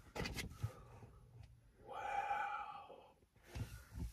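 A quiet pause: a few faint clicks as a paper calendar is handled, then a soft breathy sigh lasting about a second, around the middle.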